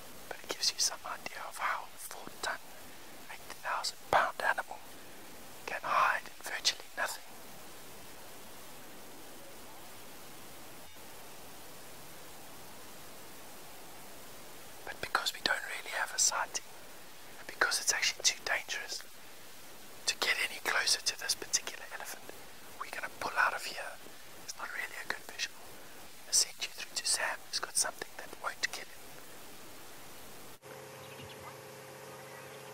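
Whispered speech, in two spells with a quiet pause of several seconds between them.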